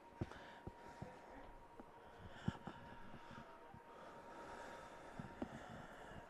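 Quiet background noise with a faint steady high tone and a few scattered clicks and knocks, the loudest about two and a half seconds in.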